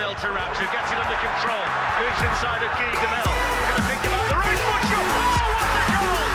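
A voice over music, with a deep bass coming in about three seconds in.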